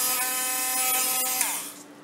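Harbor Freight Drill Master 12-volt rotary tool running free at speed with a steady high whine, then switched off about one and a half seconds in and winding down with falling pitch.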